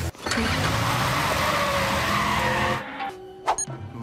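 A loud rushing noise over music for about two and a half seconds, then a quieter stretch with a few sharp clicks.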